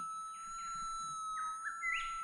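QED pulse induction metal detector's speaker giving its steady high threshold tone, with short sliding rises and falls in pitch as the coil is lowered and raised over the ground during manual ground balancing. At this ground balance setting the response is still slightly off, a little up and down.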